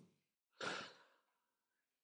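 One short breath from a man close to the microphone, a sigh-like exhale or intake lasting under half a second, about halfway into a near-silent pause.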